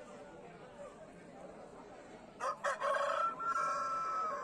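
A rooster crows: a couple of short sharp notes about two and a half seconds in, then one long held crow. Faint background chatter can be heard before it.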